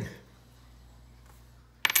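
Mostly quiet room tone, then near the end a brief, sharp metallic clink of copper pennies knocking together as a coin is handled on a wooden table.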